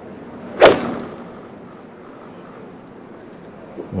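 A golf club striking a golf ball on a tee shot: one sharp crack about half a second in, trailing off quickly.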